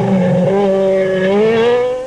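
Rally car engine running hard at high revs, a steady note whose pitch rises slightly toward the end.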